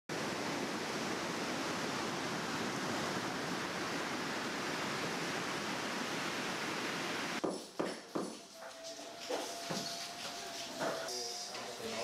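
Surf breaking on a beach, a steady rushing noise, which cuts off abruptly about seven seconds in. After it, a quieter room sound with a few sharp knocks and a faint steady tone.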